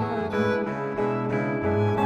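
Upright double bass played with a bow, holding long low notes, while the higher strings of a bluegrass band play over it in an instrumental passage.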